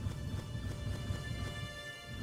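Outro music: sustained high tones over a low, pulsing rumble.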